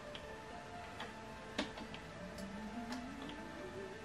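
Faint clicks of buttons being pressed on an Epson XP-6100 printer's control panel, half a dozen spaced presses while stepping through a password entry. Faint music and a slowly rising tone sound behind them.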